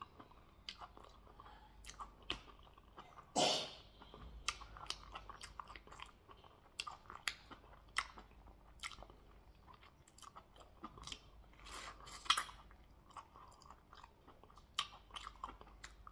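Close-miked eating sounds: wet chewing with many short lip smacks and mouth clicks as fufu and goat meat are eaten by hand. A longer, louder mouth sound comes about three seconds in, and another sharp cluster comes around twelve seconds.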